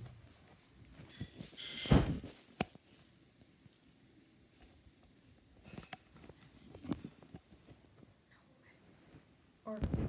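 Handling noise: scattered soft knocks and rustles with one loud thump about two seconds in and a few smaller knocks later, quiet in between.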